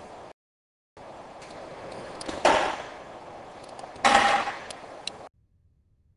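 Metal platter tray of a vacuum sublimation machine being handled: two short, loud sliding scrapes about a second and a half apart, with a few small metallic clicks around them. The sound cuts off suddenly near the end.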